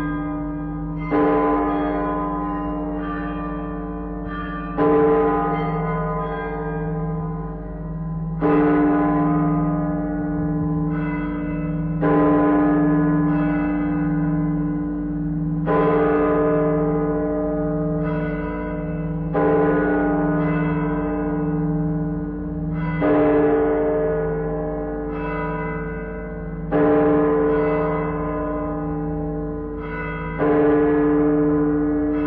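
Large clock-tower bell of Barcelona City Hall striking the twelve strokes of midnight: slow single strikes about every three and a half to four seconds, eight of them here. Each stroke rings on with a long, wavering hum that carries under the next.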